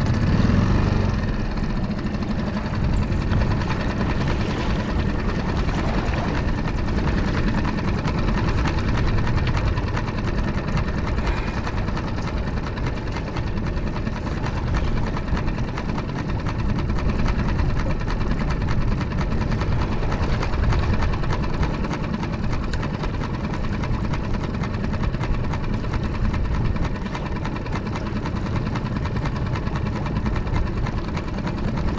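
Small outboard motor on a fishing skiff running steadily at low speed, a continuous low rumble.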